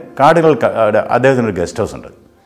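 A man talking without a break, speech only.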